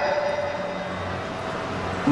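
A pause between spoken phrases, filled with steady background noise: an even hiss, with the voice's last tone fading out right at the start.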